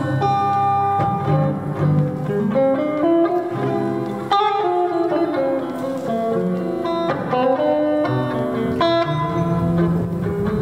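Instrumental music played on plucked guitar: a steady run of picked notes forming a melody.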